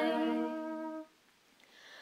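A woman's unaccompanied voice holding a sung note with vibrato, which stops about halfway through. A short pause follows, then a soft breath.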